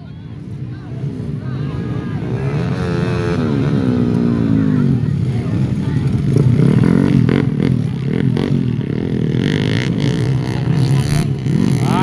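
Motocross dirt bikes racing past close by, their engines revving up and down as they take a bend. The engine noise grows louder over the first few seconds and stays loud as one bike after another comes through.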